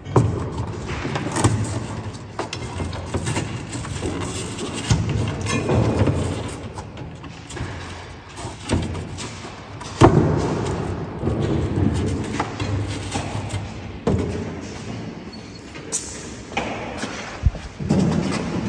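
Irregular knocks, thuds and clatter of a bicycle wheel and its strap being handled against the hard plastic shell of a Bike Box Alan Easy Fit case, with a sharper knock about ten seconds in.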